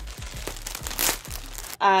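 Plastic packaging crinkling and rustling as a garment is pulled out of it, with a louder rustle about halfway through.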